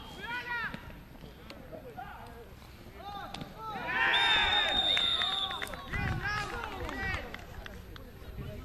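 Rugby players and touchline spectators shouting. About four seconds in, a referee's whistle gives one long blast of a second and a half as the shouting swells, and play stops.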